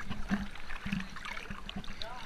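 Pool water lapping and dripping around a GoPro held at the water's surface, with small drips and splashes.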